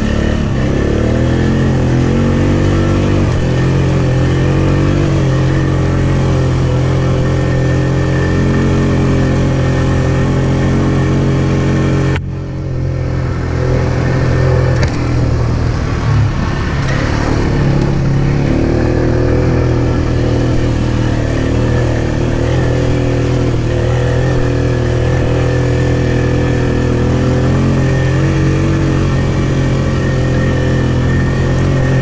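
ATV engine running under throttle on a rocky dirt trail, its pitch rising and falling as the rider works the throttle. About twelve seconds in the engine sound drops off sharply for a moment, then picks up again with a few knocks.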